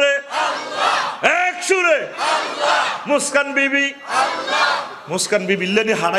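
A man preaching through a public-address system, shouting and drawing out his phrases in long, half-sung calls with short breaks between them.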